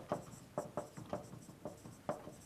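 Marker writing on a whiteboard: a run of short, irregular strokes, several a second, as letters are written.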